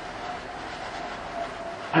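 Steady background noise: an even hiss with a faint steady hum, with no distinct events.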